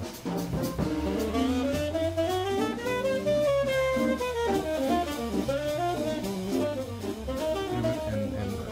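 Jazz combo playing: a Hammond A100 organ with a walking bass line on its foot pedals, under a saxophone melody, with drums keeping time.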